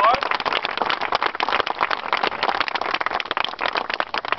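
Audience clapping, a dense, steady patter of many hands, with voices mixed in.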